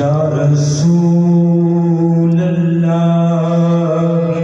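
Qawwali-style devotional singing: a man's voice holding long drawn-out notes over the steady drone of a harmonium, the pitch stepping to a new note about a second in.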